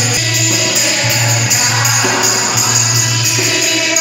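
Devotional kirtan sung by a group of women, accompanied by harmonium and dholak, with steady jingling percussion over a low sustained drone.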